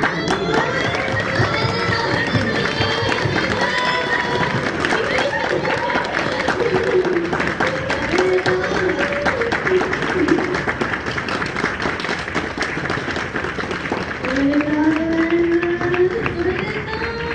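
Loud music in a live concert hall, with the audience clapping and voices calling out over it.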